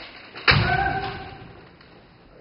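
A single sharp kendo strike about half a second in: the bamboo shinai cracking on armour together with the thud of the stamping forward foot on the wooden floor, followed by a held shout (kiai) that dies away, echoing in the hall.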